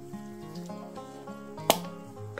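Background music with steady held notes, and a single sharp plastic click near the end as the snap-on lid of a small plastic tub of rooting powder is opened.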